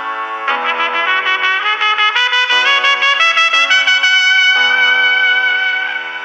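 Background pop music with a trumpet lead: a run of quick repeated notes climbing in pitch, then one long held note, over chords that change about once a second.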